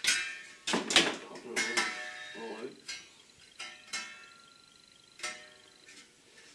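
Steel blade of a plastering trowel knocking and clinking as it is handled and freed from its packaging. There are about six sharp knocks, several followed by a short metallic ring.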